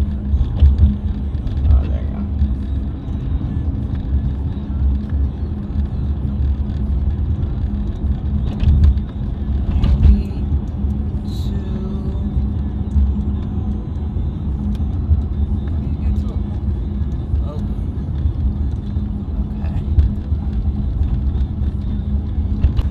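Steady road and engine rumble inside a Mercedes-Benz C-Class cabin while driving, with a low steady hum under it.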